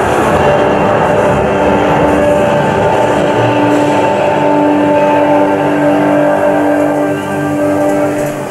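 Theatre show soundtrack played loud over the house speakers: a dense rumble of storm effects, then dramatic music with long held notes from about a second and a half in.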